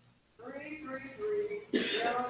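A person's voice in the church room, then a sharp cough about three-quarters of the way through.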